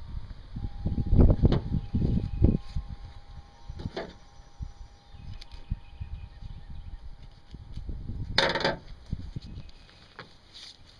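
Handling sounds of a wild turkey carcass being skinned by hand: dull low thumps and knocks in the first few seconds, then scattered small knocks, and a short tearing rasp of skin and feathers coming away a little after eight seconds in.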